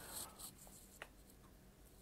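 Near silence in a small room, with a faint brief rustle at the start and a single soft click about a second in.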